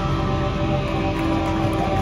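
Live band's electric guitar and amplifier left ringing on a steady held drone of several tones, with low bass rumble and no drums, as the song ends.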